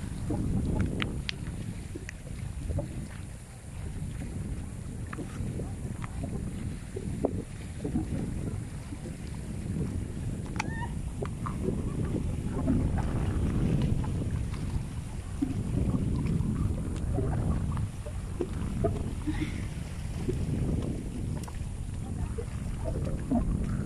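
Wind buffeting the microphone as a steady, uneven low rumble, with scattered light clicks and scuffs from walking over rock.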